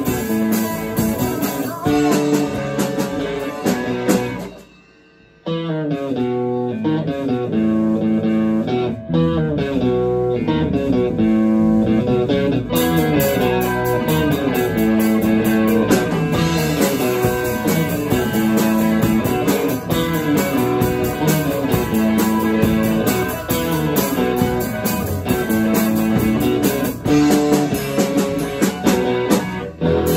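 Live rock band playing an instrumental passage, with the guitars up front over bass, drums and keyboard. About five seconds in, the band stops dead for about a second, then comes back in on a repeating riff, and the cymbals fill out about halfway through.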